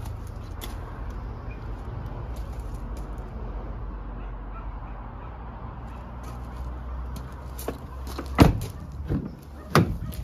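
Doors of a Ford Ranger Wildtrak pickup: a loud door thud about eight seconds in, then a softer knock and a second thud a second and a half later, over a steady low rumble.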